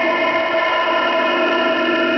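Shortwave radio receiver audio in lower-sideband mode: a cluster of steady tones held together over static, a constant chord-like drone with no speech.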